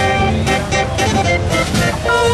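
Fair organ playing a tune: pipe notes held over drum and cymbal beats.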